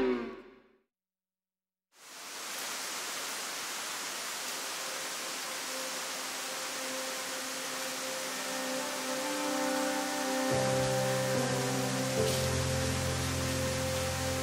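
Steady, even rush of falling water from a waterfall with a 50 m drop, coming in about two seconds in after a brief silence. Soft sustained music notes join it in the last few seconds.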